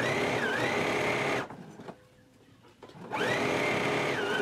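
Electric sewing machine stitching through fabric in two runs: its motor whine rises to speed and runs for about a second and a half, stops for about a second and a half, then starts up again near the end.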